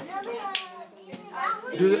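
Children's and adults' voices chattering, with a sharp click about half a second in and a laugh near the end.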